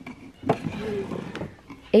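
A wooden drawer being pulled open by hand: a sharp knock about half a second in, a short scraping slide of wood on wood, then a lighter tap.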